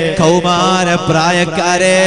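A man's voice chanting a slow, ornamented melodic line in long held notes over a steady low tone, with short breaths about a quarter second and a second in.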